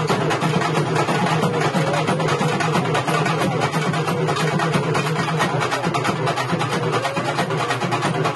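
Urumi melam drum ensemble playing without a break: fast, dense drumming over a steady low drone.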